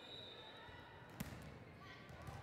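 One sharp smack of a volleyball being struck or hitting the floor about a second in, heard over the quiet background of a large gym.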